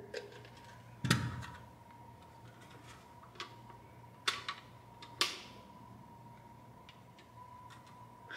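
9mm cartridges being pressed one by one into a Grand Power Stribog SP9A1 double-stack magazine: a handful of separate sharp clicks spread over several seconds, the loudest about a second in. A faint steady high tone runs underneath.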